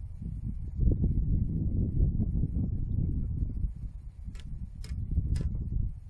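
Wind buffeting the microphone: a gusting low rumble, heaviest in the first half. Near the end come three short sharp clicks about half a second apart.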